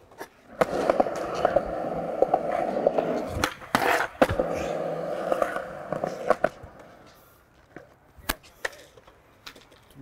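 Skateboard wheels rolling on a concrete skatepark surface, a steady rumble broken by sharp clacks of the board against the concrete, the loudest about four seconds in. The rolling fades out about seven seconds in, leaving a few isolated clacks.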